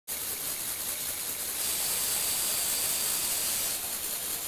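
Small electric motor and Lego Technic gear train, including a worm gear, running with a steady high whir as it tilts the platform. The high-pitched part grows louder from about a second and a half in until shortly before the end.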